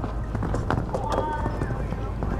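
Hoofbeats of a horse cantering on sand footing toward a jump, a series of short thuds, with voices in the background.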